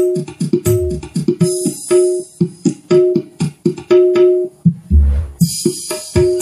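Recorded music played through a Yamaha MX-06BT mixer and a Firstclass FCA3000 amplifier out to a speaker in a sound test. The music has a fast, busy rhythm, a short mid-pitched note repeating over and over, and a few deep bass thumps.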